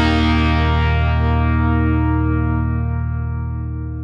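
Background music: a distorted electric guitar chord held and slowly fading out.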